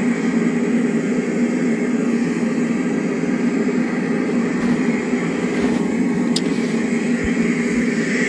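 A steady mechanical drone with no speech, even and unchanging in level, with one faint tick about six and a half seconds in.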